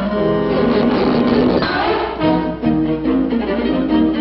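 Orchestral cartoon score, with bowed strings playing a run of changing notes.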